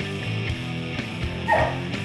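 Background music, with a dog giving one short bark about three-quarters of the way in.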